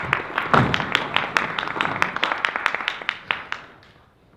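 Audience laughing and applauding in a small theatre, many sharp claps over the laughter, the applause thinning out and dying away near the end.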